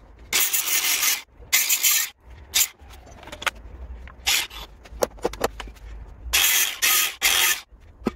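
Angle grinder with a cutting disc grinding the steel of an old diamond saw blade in a series of short, harsh passes, the longest about a second.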